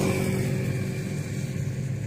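A motor engine's steady low hum, slowly growing fainter.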